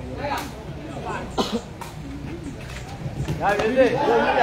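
Spectators' voices with a few sharp knocks of a sepak takraw ball being kicked back and forth. The voices grow louder near the end.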